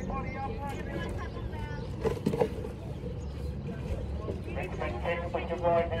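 Indistinct voices in the background, over a steady low rumble.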